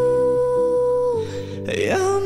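A man and a woman singing a duet medley over soft accompaniment: one long held sung note that ends a little over a second in, then a short break before the next line.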